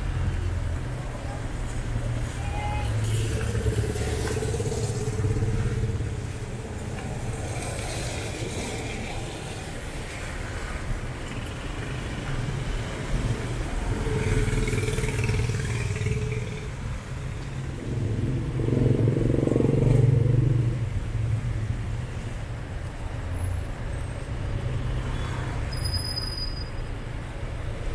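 City street traffic: a steady low engine rumble from passing cars, motorcycles and tricycles, swelling three times as vehicles go by, loudest about twenty seconds in.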